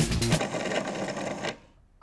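Background music with a steady beat that cuts off less than half a second in. It is followed by about a second of faint, even background noise, then a brief near silence.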